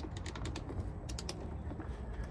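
Light metallic clicks and taps of a hand tool and gloved hands working on the truck's battery terminals and cable connections, in two quick clusters: one at the start and one about a second in.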